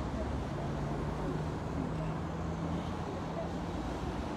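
A vehicle engine running with a steady low rumble and a held low hum lasting about three seconds, mixed with murmuring voices.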